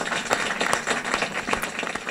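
Audience and panel applauding, a dense, even patter of many hand claps.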